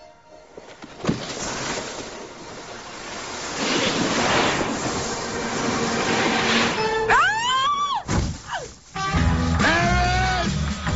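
A snowboard sliding over packed snow, building to a loud rush as it speeds down toward a jump. Near the end come rising-and-falling whooping cries, then background music with a bass beat.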